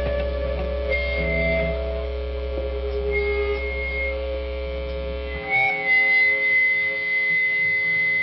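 Electric guitar amplifiers humming, with high held guitar-feedback tones coming and going. The low hum cuts out about five and a half seconds in, leaving a long high feedback tone.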